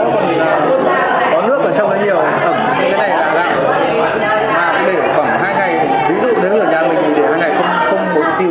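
Several people talking over one another: continuous overlapping chatter with no clear single voice.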